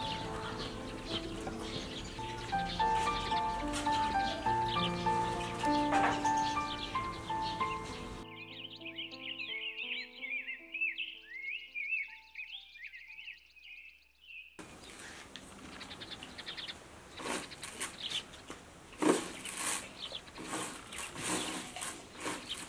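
Soft background music of held melodic notes, which fades out under a spell of rapid, high bird chirping about eight seconds in. Around fourteen seconds the birds and music stop abruptly, giving way to an open outdoor background with scattered knocks and taps.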